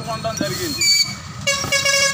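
A vehicle horn honking: a short high beep about a second in, then a longer held blast starting near the end, over people talking.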